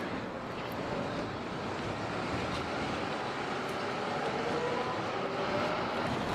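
Steady road-traffic noise, with a vehicle's faint engine tone rising slowly in pitch through the middle.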